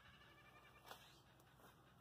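Near silence: faint outdoor background with a single soft click about a second in.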